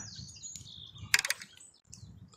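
Birds chirping faintly in the background, with a short quick run of clicks a little over a second in.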